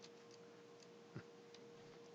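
Near silence: a few faint computer mouse clicks, one a little louder about a second in, over a faint steady hum.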